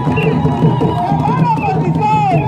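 A group of women singing a traditional song together, their voices rising and falling in arching phrases over a dense, loud background.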